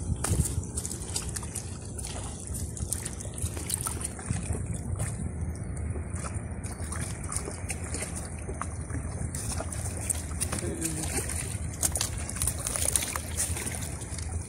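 Shallow sea water lapping and sloshing against breakwater rocks, with a steady low rumble of wind on the microphone and scattered small clicks.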